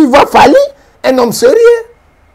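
Speech only: a voice talking in two short phrases, the second ending in a drawn-out vowel.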